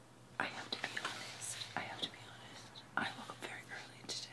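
Quiet whispering: a few short, breathy whispered phrases.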